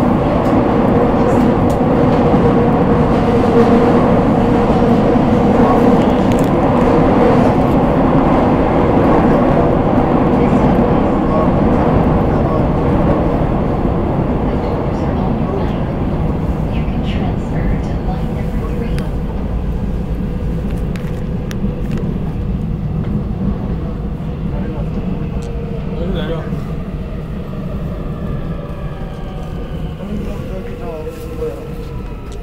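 Seoul Metro Line 5 train running, heard from inside the carriage: a loud, steady rumble with a hum, gradually getting quieter over the second half, and a gliding motor whine near the end.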